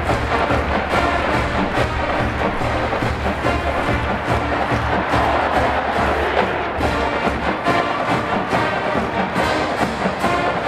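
Full marching band playing with brass and percussion, its low bass notes dropping out about seven seconds in.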